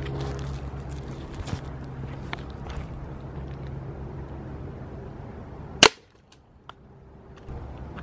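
A pistol-style BB gun firing once, a single sharp crack about six seconds in. Before the shot there is a steady low background hum with a few faint ticks.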